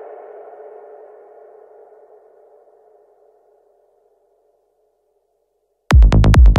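The end of an electronic trance track: a lingering synth tone fades out over about three seconds into silence. Just before the end the next track cuts in loudly with a heavy, regular kick-drum beat.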